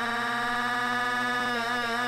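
A sustained synthesizer chord held on its own with no drums, as in the breakdown of a breakbeat track; its tones waver slightly near the end.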